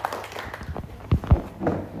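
Light applause from a small group, a scattering of handclaps, with two dull low thumps a little past a second in.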